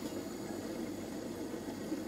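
Steady low hiss and hum from a lidded stainless pan of meat sauce cooking over a gas burner turned down low.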